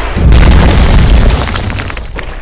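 Cinematic boom sound effect for a stone wall shattering: a heavy impact about a quarter-second in over a deep rumble, then crackling debris as it slowly fades.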